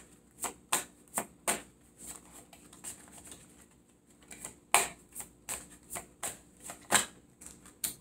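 A deck of tarot cards being shuffled by hand: a run of sharp card clicks and slaps, about two to four a second, easing off for a couple of seconds in the middle before picking up again.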